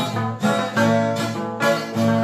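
Handmade viola de buriti, a wooden folk guitar, played solo: plucked notes and chords ringing on its strings in a steady rhythm, a fresh pick attack every half second or so.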